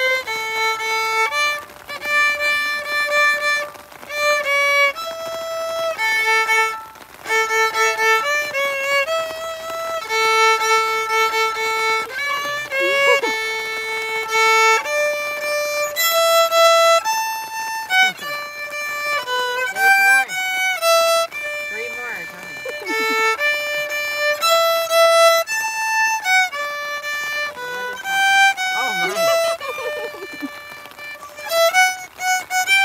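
A solo violin playing a slow melody of long bowed notes that step from pitch to pitch.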